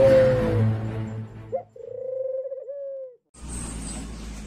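Intro music with a beat fades out about a second in. It gives way to a single drawn-out, wavering, pitched call lasting about a second, which scoops up at the start and drops at the end. It breaks off, and near the end the sound cuts to outdoor background noise.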